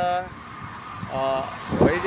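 Road traffic in the background, faint and steady, under a man's speech, which pauses for about a second. A short flat-pitched sound, a horn or a drawn-out syllable, comes just after the middle.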